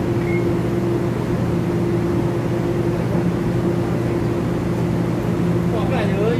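Steady electrical hum with a few held low tones from a TEMU2000 Puyuma Express electric tilting train standing at the platform with its onboard equipment running.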